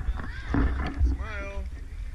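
A person's voice giving a short drawn-out call, its pitch dipping and rising, about a second in, over a steady low rumble.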